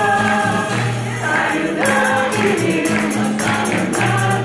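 Mixed choir singing a carol to acoustic guitar accompaniment, with a tambourine coming in rhythmically about halfway through.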